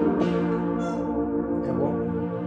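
Roland E-09 arranger keyboard playing held chords with both hands in a sustained synth tone, changing chord shortly after the start and again near the end.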